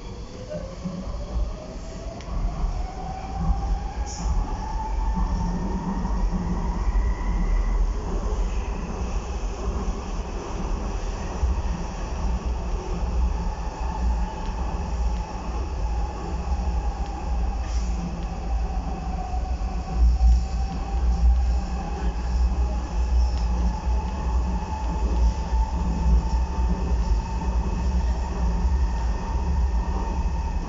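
Docklands Light Railway B07 Stock train heard from inside the car as it pulls away. Its traction motors give a whine that rises in pitch over the first few seconds as the train speeds up, then holds steady while it runs, over a constant low rumble of wheels on track. There are a few heavier jolts about two-thirds of the way through.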